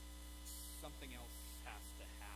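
Steady low electrical mains hum, with short fragments of a man's voice over it about a second in and again near the end.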